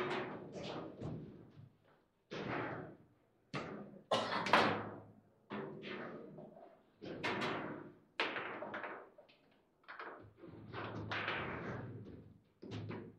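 Table football being played: a string of sharp knocks and thuds at irregular intervals, each ringing briefly, as the ball is struck by the rod-mounted players and bangs against the table.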